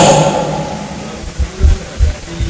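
A man's voice trails off, then a few short, dull low thumps of handling noise come from a handheld microphone.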